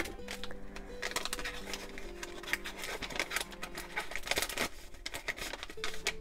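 Soft background music with held, steady notes, over the crinkle and rustle of a translucent packaging sleeve being opened and a stack of paper die-cut stickers being handled.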